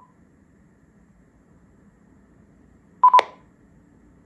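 Icom IC-F5022 mobile radio giving two quick beeps about three seconds in, followed at once by a sharp tick, as it finishes a clone read by the programming software and leaves clone mode.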